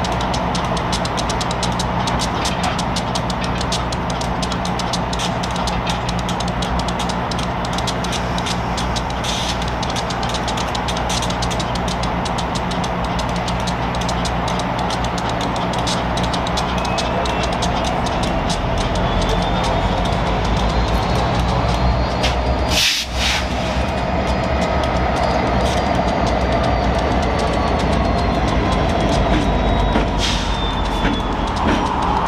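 Diesel engine of a Tacoma Rail GP road-switcher locomotive running as it moves slowly through the yard, a steady low rumble with fine rapid clicking, mixed with background music.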